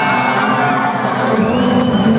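Live trance music played loud over a concert sound system, with a crowd cheering and whooping over it.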